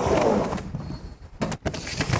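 Skateboard wheels rolling on a halfpipe ramp, a loud rumble that eases off partway through, with a few sharp clacks about a second and a half in.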